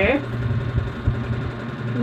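A steady low hum in the room, with a few soft low thumps about halfway through.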